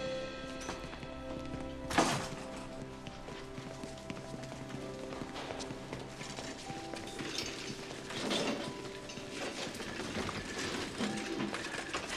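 Soft, sustained film score fading under the scene, with one sharp bang about two seconds in and footsteps and movement sounds in a hallway.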